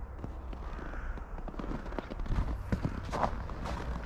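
Footsteps crunching in snow as someone walks at an even pace, about two or three steps a second, over a steady low rumble.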